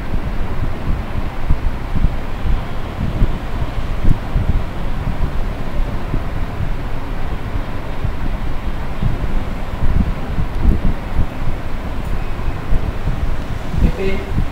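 Wind buffeting the microphone: a loud, uneven low rumble with no steady pitch.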